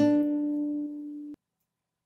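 Acoustic guitar: a fingerpicked chord, several notes struck at once, rings for about a second and a half and then cuts off abruptly. It closes the passage being taught.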